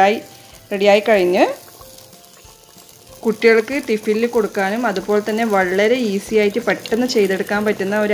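A voice singing a flowing melody in a background song, in two phrases separated by a pause of about two seconds just after the start.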